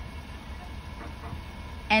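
Car engine idling with a low, steady rumble, heard from inside the car.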